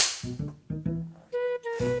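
A film clapperboard's sticks snap shut once, sharply, right at the start, followed by light plucked and bowed string background music.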